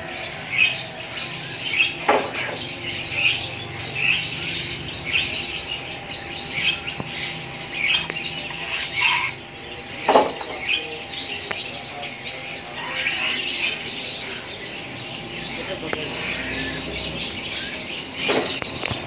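Blue-and-gold macaw giving two loud, harsh squawks, about two seconds in and about ten seconds in, over the steady chirping of other caged birds.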